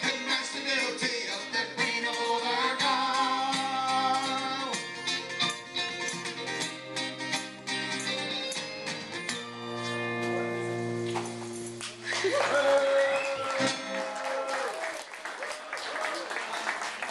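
Live folk band playing the close of a song, with strummed acoustic guitar and tambourine jingling on the beat, ending on a held final chord about ten seconds in. Audience applause and voices follow in the last few seconds.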